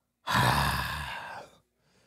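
A man's exasperated sigh: one breathy exhale lasting a little over a second, loudest at the start and trailing off.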